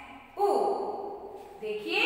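A woman's voice speaking in long, drawn-out syllables, as when calling out letters to young children.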